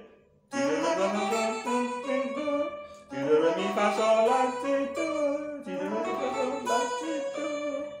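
Electric guitar playing a melodic run of notes, some sliding in pitch. It starts about half a second in, dips briefly around three seconds, then carries on with a denser run.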